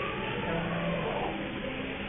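HO scale train of ethanol tank cars rolling past close by, a steady rolling rumble with a low hum.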